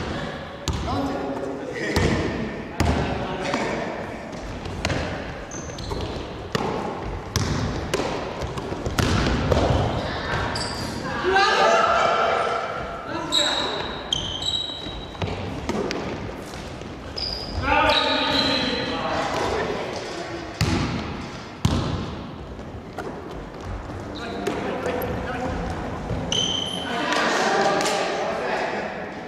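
Basketball being dribbled and bounced on a wooden gym floor, the bounces echoing in a large hall, with short squeaks of sneakers on the floor at times.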